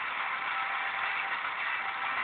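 Degen portable radio's speaker hissing with FM static as a weak long-distance station on 107.7 MHz fades down into the noise, its music barely showing through.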